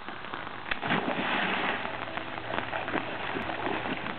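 A person jumping into an above-ground pool: a sudden splash a little under a second in, then a second or so of rushing, sloshing water. Rain pattering on the water and deck continues underneath.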